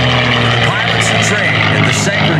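Red Tail P-51C Mustang's Rolls-Royce Merlin V-12 engine running loudly with a steady drone as the fighter banks overhead.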